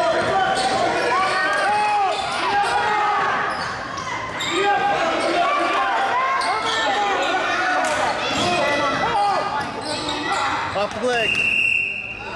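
A basketball being dribbled on a hardwood gym floor, with several voices calling out and echoing around the hall. Near the end a steady high whistle blast sounds and play stops.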